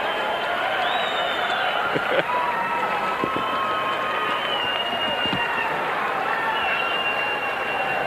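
Arena crowd cheering and applauding a knockout win: a steady din of many voices with long held calls above it.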